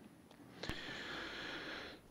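A faint click, then about a second of soft, breathy hiss, like a person breathing in before speaking.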